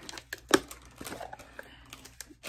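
Crinkling of a clear plastic zipper bag and light knocks of a hard plastic nail soaking bowl being lifted out of it, with one sharper click about half a second in.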